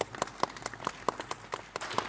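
Audience applause from delegates in a chamber: separate hand claps at first, thickening into fuller, steadier applause toward the end.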